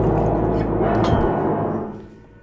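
A band's closing chord on piano, guitars and drum kit, with a final drum hit about a second in, then ringing away and dying out near the end.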